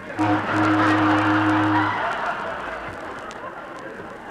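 A low ship's steam whistle sound effect blows, a short blast and then a longer one that stops about two seconds in, over crowd cheering that fades away.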